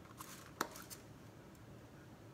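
Lid being taken off a small plastic sample cup: a brief faint rustle, then a single sharp plastic click a little over half a second in.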